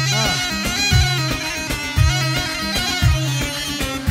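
Amplified dabke music: a reedy, bagpipe-like double-pipe melody of the mijwiz and yarghul kind, played over a heavy drum beat that hits about once a second.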